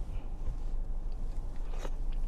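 A person chewing a mouthful of soft, cooked-down mustard cabbage with the mouth closed, over a steady low rumble.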